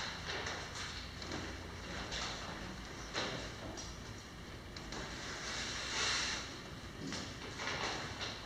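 Papers and document folders being handled on a table: irregular rustling and shuffling of sheets with a few light knocks, the loudest rustle about six seconds in, over a low room hum.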